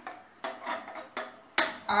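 Gas stove burner being lit under a pan: a few soft knocks, then two sharp clicks near the end.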